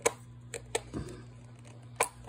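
Handling clicks from a small plastic coin container being pried at to free a toy metal coin: about four sharp clicks in the first second, the first the loudest, over a faint steady low hum.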